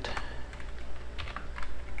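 Computer keyboard keystrokes: a few irregular key presses while typing code.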